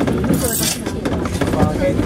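A Paris Métro train running on elevated track, with a steady rumble of wheels on rails. People are talking over it, and there is a short hiss about half a second in.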